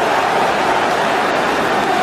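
Steady stadium crowd noise, the sound of many voices in the stands blended into an even din during a stoppage for a foul.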